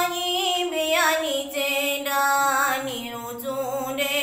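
A young woman singing a slow melody solo, holding long notes that glide from one pitch to the next.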